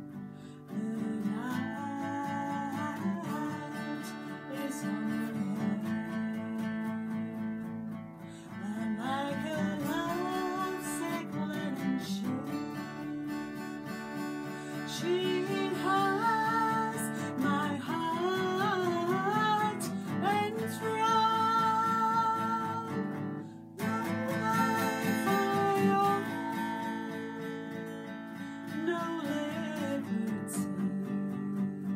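Acoustic guitar playing a slow ballad, with a woman's voice singing long, wavering notes of the melody over it.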